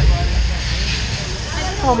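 Boat water-ride ambience in a dark indoor section: a loud, steady deep rumble with a rushing hiss over it, faint voices underneath.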